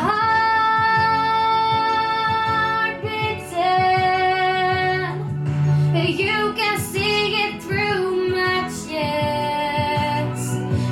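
A teenage girl singing a slow pop song into a handheld microphone. She holds a long steady note for about three seconds at the start and another from about three and a half to five seconds, then sings a run of shorter phrases and holds a final note near the end.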